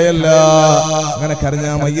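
A man's voice intoning in a chant-like, sung delivery, holding long, level notes.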